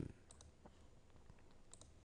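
A few faint computer mouse clicks against near silence.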